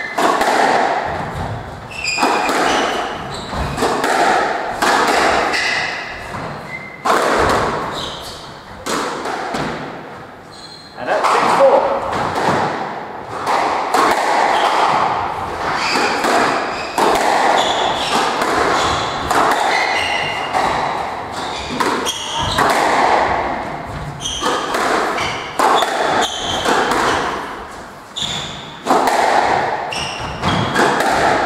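Squash rally: the ball struck by rackets and hitting the court walls in a run of sharp, irregular thuds, with shoes squeaking on the wooden floor, all echoing in the enclosed court.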